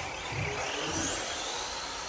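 Tamiya TT-02 radio-controlled car driving on carpet, its electric motor and drivetrain giving a whine that rises in pitch, with a few soft low thumps.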